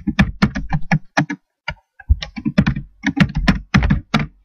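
Computer keyboard typing: a quick, irregular run of keystrokes, with a short pause a little before halfway.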